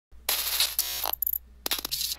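Logo intro sound effect: a burst of hiss, then a short metallic ring, quick mechanical clicks and a few sharp strikes.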